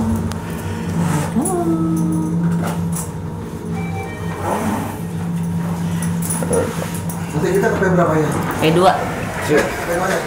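Mitsubishi glass elevator car running with a steady low hum that stops about eight seconds in as the car comes to rest. Voices are heard over it.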